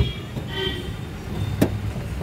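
Car cabin noise while driving in traffic: a steady low engine and road rumble, with two sharp clicks, one at the start and one about a second and a half in.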